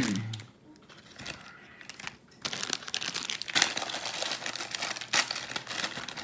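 A cough at the start, then a short lull, then from about two and a half seconds in a steady run of plastic crinkling as a Hot Wheels Mystery Models blind-bag wrapper is handled.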